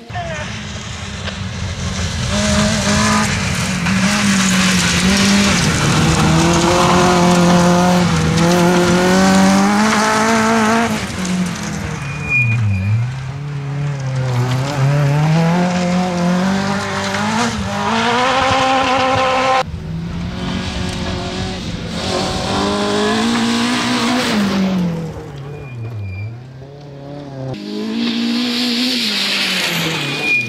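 Citroën C2 R2 Max rally car's naturally aspirated four-cylinder engine revving hard on a gravel stage, its pitch climbing through the gears and dropping sharply on lifts and braking, with tyre and gravel noise. Abrupt cuts join several passes.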